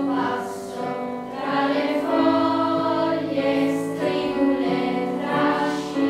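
Children's choir singing long, held notes with piano accompaniment.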